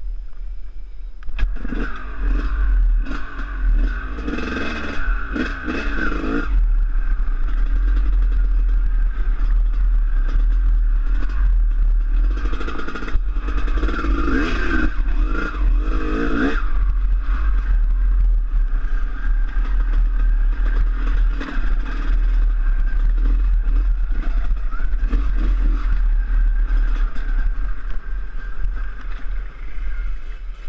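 Dirt bike engine running under throttle, revving harder in two longer stretches, from about two to six seconds in and again from about twelve to seventeen seconds, and running more evenly in between. A heavy low rumble of wind and vibration sits under it on the helmet-mounted camera's microphone.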